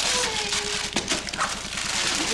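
Christmas wrapping paper being torn and crumpled by hand as a present is unwrapped, dense crackling rustles through the first second with a sharp click about a second in. A drawn-out vocal sound falls slowly in pitch near the start.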